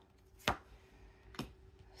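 Two sharp taps about a second apart as an oracle card is handled and set down on a cloth-covered table.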